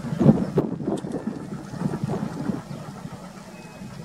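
Passenger train running away into the distance, its wheels rumbling and knocking on the rails in uneven bursts that fade as it goes, with wind on the microphone.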